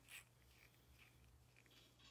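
Near silence: room tone, with faint handling of a small bottle and its lid.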